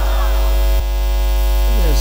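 Loud, steady electrical mains hum on the public-address sound system, a low buzz with many overtones that fills the pause in speech.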